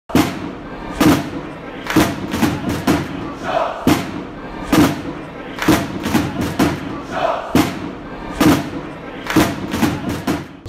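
Sports-style intro music: a heavy stomping drum beat, about one big hit a second with lighter hits between, and a crowd-like shout sample twice.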